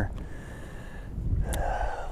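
Wind rumbling on the microphone, with handling noise and one sharp click about one and a half seconds in.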